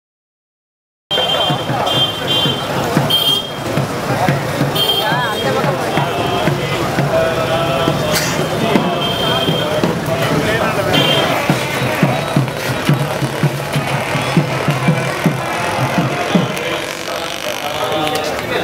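Street procession sound that begins abruptly about a second in: many voices mixed with music, with repeated low drum-like thumps.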